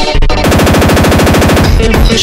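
Electronic music track broken by a fast roll of evenly spaced sharp hits, like rapid fire, about twenty a second, from about half a second in until shortly before the end.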